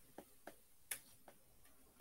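Four faint taps of a stylus on an iPad's glass screen as strokes are drawn, a light click roughly every third of a second over near silence.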